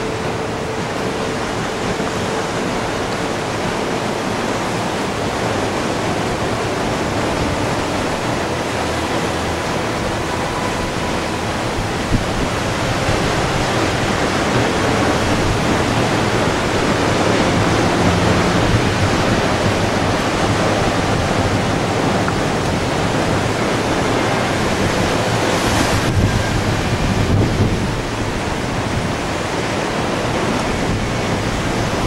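Sea surf breaking on a rocky shore, a steady, loud rush, mixed with wind on the microphone.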